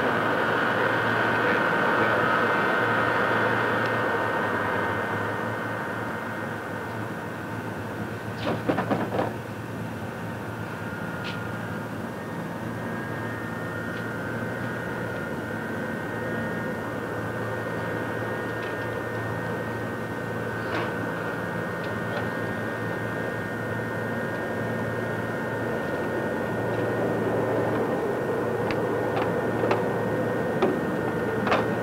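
Steady machinery noise on an aircraft flight line: a high whine over a low hum, like a turbine or ground power unit running, a little louder for the first few seconds. A short cluster of clicks and knocks comes about nine seconds in, with a few sharp ticks near the end.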